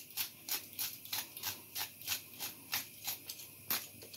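Hand-held pepper mill grinding black peppercorns over a pan: a faint, even run of short grinding clicks, about four a second.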